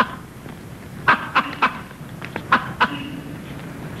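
A man clicking his tongue, a quick series of sharp clucks in two short runs, one about a second in and one about two and a half seconds in.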